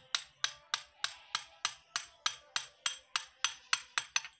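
A small hammer tapping steel blades into the cage of a 32-blade oil expeller, about three light, evenly spaced strikes a second, each with a short metallic ring. The taps are kept gentle because the blades are brittle and can break.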